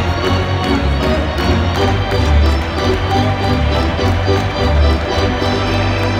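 Arena organ playing a tune: held chords over a bass line that steps from note to note.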